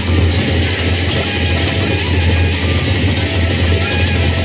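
A Lombok gendang beleq ensemble playing loudly: large Sasak barrel drums and hand cymbals together, a dense, unbroken wash of cymbals over a deep, steady low sound.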